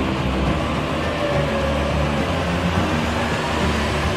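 A steady, even drone with a strong low hum and no distinct events.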